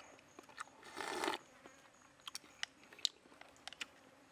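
A person slurping soup from a bowl once, about a second in, followed by a scatter of short clicks and smacks of chewing.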